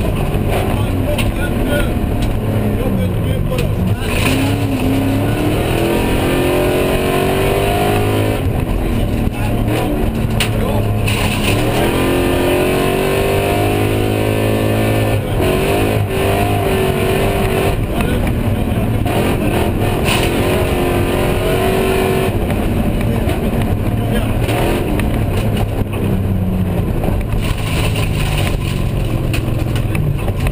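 In-cabin sound of a V8-engined BMW E36 rally car driven hard on a stage: the engine pitch repeatedly climbs as the car accelerates and falls back when it lifts or shifts, over steady road and tyre noise.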